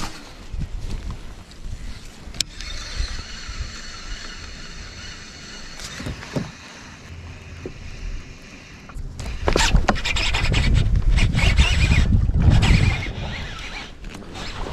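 Baitcasting reel being cranked, a steady whirring, with wind buffeting the microphone. The wind noise and rustling grow louder over the last few seconds.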